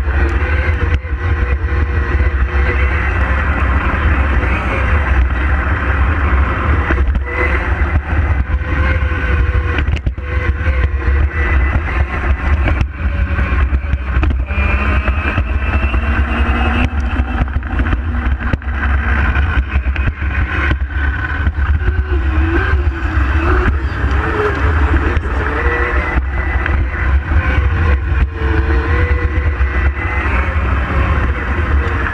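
Onboard sound of a small electric Power Racing Series kart at speed. The electric motor whines in pitch that rises and falls as the kart speeds up and slows through the corners, over a heavy rumble of wind and road noise on the microphone.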